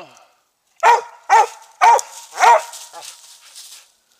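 Treeing Mountain View Cur barking up a tree: four loud barks about half a second apart, starting about a second in. This is a dog baying treed at a squirrel.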